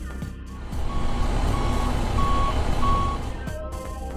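A vehicle reversing alarm beeping four times at an even pace over an engine rumble that swells in about a second in and fades near the end, with background music underneath.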